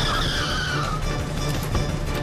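Car tyres squealing in a skid, a high screech that slides down in pitch and dies away about a second in, over background music.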